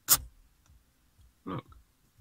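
A sharp click, then a couple of faint ticks, as a car radio's rotary-encoder volume knob is spun very quickly by hand.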